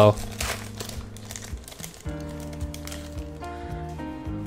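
Foil wrapper of a Magic: The Gathering Modern Horizons booster pack crinkling as it is torn open, mostly in the first two seconds. Background music with steady held notes comes in at about two seconds.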